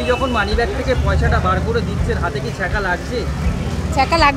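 People talking, over a steady low background rumble.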